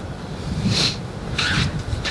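Outdoor wind rumble on the microphone, with two short hissing scuffs less than a second apart.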